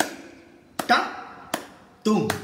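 Konnakkol vocal percussion: a man speaking sharp, clipped solkattu syllables in rhythm, two strokes in this stretch, about a second in and about half a second later, each dying away quickly.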